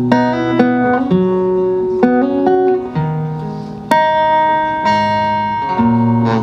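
Acoustic guitar playing a song's instrumental intro: chords struck about once a second and left ringing, with one sharper strike near the middle.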